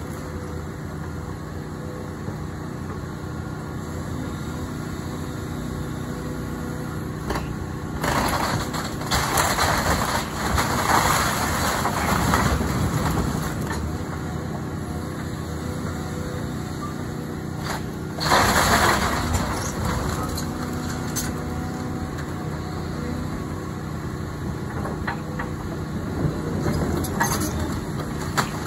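Caterpillar hydraulic excavator's diesel engine running steadily while it tears down a wooden house, with loud crashes of timber and roofing breaking and falling: a long stretch starting about eight seconds in and a shorter one a little past the middle.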